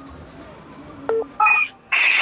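Phone keypad tones: after a second of faint low hum, short loud beeps of steady pitch sound in the second half as a number is dialled.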